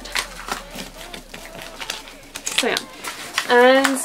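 Paper and sticker sheets being handled, with a run of light clicks and rustles. About three and a half seconds in, a woman makes a short voiced sound, the loudest thing here.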